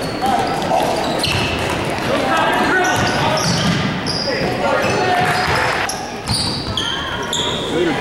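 Sneakers squeaking on a hardwood gym floor, many short high squeaks as players cut and stop, with a basketball bouncing. Voices of players and spectators murmur and call underneath in a large, echoing gym.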